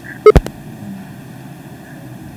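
A brief pause in the talk: two short sharp clicks close together about a third of a second in, then only steady low background noise.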